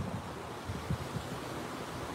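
Steady, fairly faint outdoor background noise, mostly wind rumbling on the phone's microphone, with a few soft low bumps.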